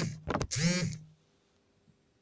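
A woman's voice ending a spoken sentence, with a brief sharp click in the middle of it, then near silence: room tone.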